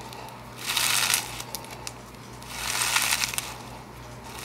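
Crunchy lava rock slime with a clear base squished by hand in its tub, crackling and popping. It comes in two rounds of about a second each, the first soon after the start and the second past the halfway mark.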